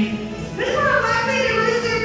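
Music with a singing voice holding long, gliding notes.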